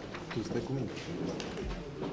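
Low, indistinct voices talking in a meeting hall, with a few light clicks.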